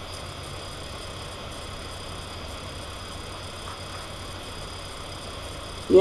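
Steady low hum with a faint hiss, unchanging throughout: background room noise with no other event.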